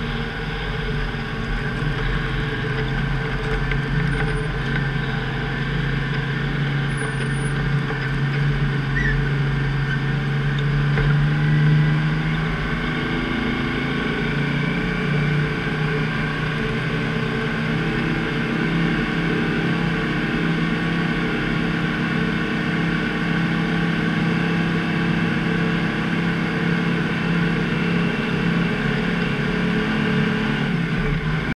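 Plow truck's Detroit Diesel engine running steadily. Its pitch and loudness rise a little to a peak about twelve seconds in, then settle at a slightly lower, even note.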